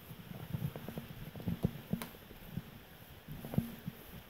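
Footsteps on old wooden floorboards: an irregular run of light knocks and thumps, with a few heavier steps.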